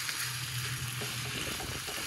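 Beef chunks, bell pepper and onion sizzling in a stainless steel frying pan on a camp stove, with a wooden spatula stirring and lightly clicking against the pan from about a second in.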